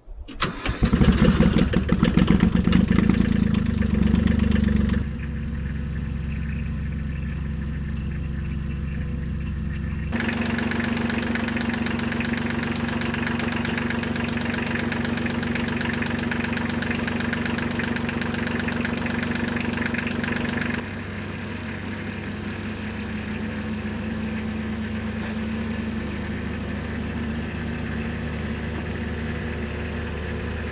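Kubota compact tractor's small diesel engine catching about half a second in, then running steadily at low speed as the tractor crawls over short timber ramps on the truck. The level changes abruptly a few times.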